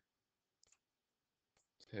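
Near silence broken by a few faint, short clicks, one about two-thirds of a second in and two more near the end.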